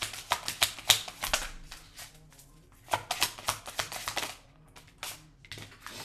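A tarot deck being shuffled by hand, the cards riffling with quick, crisp clicks in two bursts: one at the start that fades out by about a second and a half in, and another about three seconds in. A few single card taps follow near the end.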